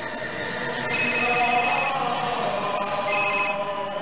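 Motorola cellular phone ringing with an electronic trilling ring: one ring of about a second starting about a second in, and a shorter one near the end, over steady background noise.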